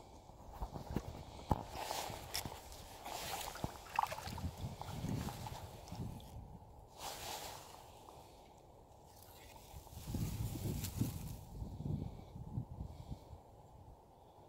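Quiet sounds of paddling a sit-on-top kayak: irregular paddle strokes in the water with small knocks and clicks on the hull.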